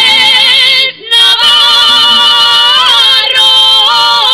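Two women singing a Navarrese jota in duet, holding long notes with vibrato. The singing breaks off briefly about a second in, then goes on with a long held note.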